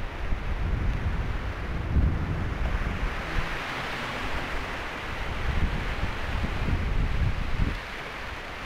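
Sea surf washing over a rocky shore, mixed with wind buffeting the phone's microphone in gusty low rumbles. The hiss of the surf swells about halfway through.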